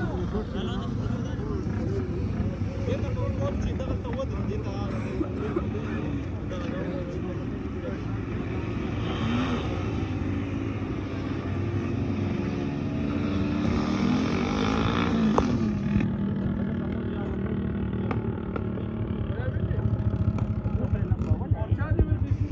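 Vehicle engines running on the road below, with pitch rising and falling as they move along, mixed with indistinct voices of people nearby.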